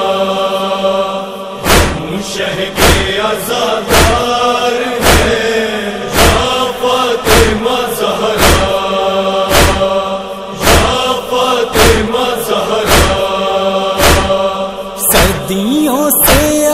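Male chorus chanting a slow, drawn-out nauha refrain. From about two seconds in it is joined by steady matam beats, sharp chest-beating thuds about once a second, keeping the mourning rhythm.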